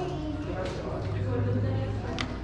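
Indistinct voices and chatter in a crowded room, with a steady low hum in the second half.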